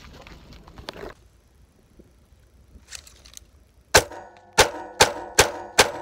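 Five gunshots in quick succession about two-thirds of the way in, unevenly spaced at roughly half a second or less apart, each with a short ring after it.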